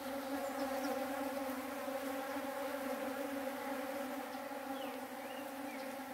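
Many bees buzzing as they forage in open dragon fruit (pitaya) flowers: a dense, steady hum that does not let up.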